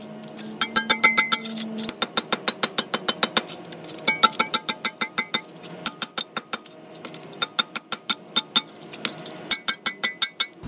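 Mini sledgehammer striking a wood block laid over bent steel anchor bolts on a bollard's base plate, pounding them down flat. The rapid blows come several a second in runs with short pauses, each with a brief metallic clink.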